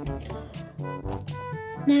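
Background music: an instrumental tune of short, steady notes over a regular bass pulse.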